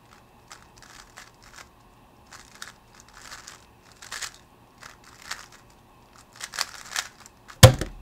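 A speed cube being turned quickly by hand, an irregular run of plastic clicks and scratchy turns, ending in one loud thump near the end as the cube is set down on the mat and the hands come down on the timer.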